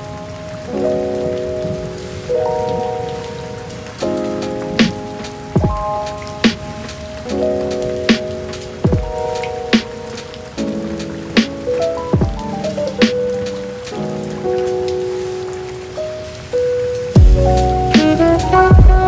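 Steady rain sound mixed with a chill instrumental beat: soft chords changing every second or two, with a few deep kick-drum hits. The music grows louder with a heavier bass near the end.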